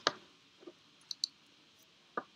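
Scattered clicks of laptop keys and trackpad being pressed: one sharp click at the start, then a few fainter ticks.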